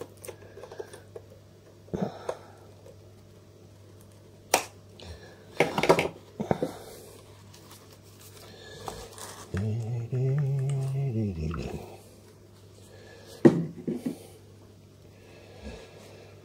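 Scattered sharp clicks and knocks of metal needle-nose pliers and a plastic camera body being handled while working at corroded, leaked AA batteries stuck in a Canon T70's battery compartment, over a faint steady low hum. About ten seconds in, a low voice-like sound lasts about two seconds, rising and then falling in pitch.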